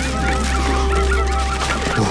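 A flock of poultry calling at once, many short overlapping calls, over a steady low drone of background music.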